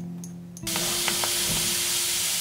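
Tiny dry grains poured from a bag into a glass jar, a steady hiss of grains streaming in that starts about a third of a second into the clip and keeps going.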